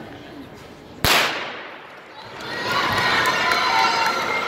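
A single starting-pistol shot about a second in, echoing through the rink, followed by spectators cheering and shouting as the race starts.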